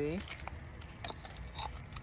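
Faint scattered clicks and crackles as a hand reaches among dry leaves and lifts a small plant pot.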